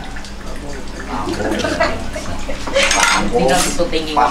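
People talking, with the clink and scrape of a metal ladle against a cooking pot as sauce is spooned over a plate of rice.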